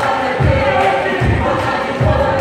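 A group of voices singing together in held, gliding phrases, over a steady low beat about twice a second.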